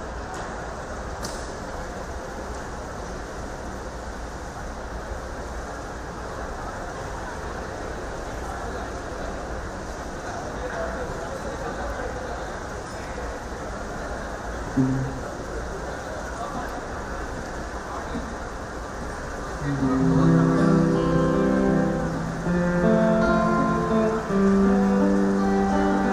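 Low murmur and hall noise, then, about twenty seconds in, a small band of harmonium and guitars starts playing long held chords.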